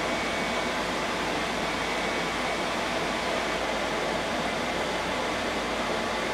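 Steady, even hiss of background noise that does not change, with no distinct events in it.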